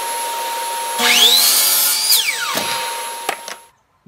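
A Hitachi miter saw's motor starts about a second in, its whine rising quickly to full speed as it cuts a piece of wood. A second later it is switched off and winds down in a falling whine. A steady machine hum runs underneath and stops shortly before the end.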